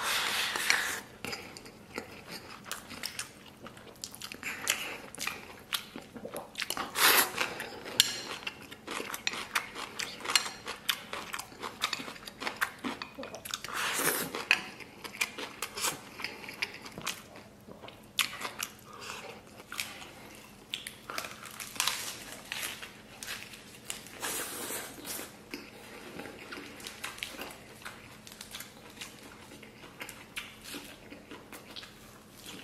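Close-up eating sounds of a person shovelling rice from a bowl with chopsticks and chewing. There are many short wet mouth clicks throughout, with louder bursts of biting now and then.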